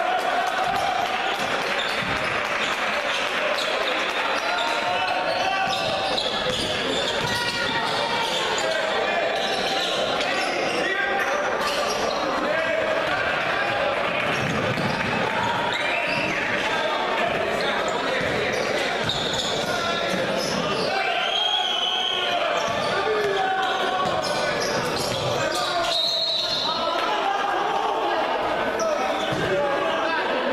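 Basketball being dribbled on a hardwood gym floor, with voices and crowd noise echoing through the hall.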